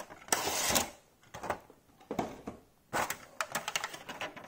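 Cardboard toy box being opened and its plastic insert tray slid out: a sliding rustle about half a second in, then scattered light clicks and taps of handled plastic and card.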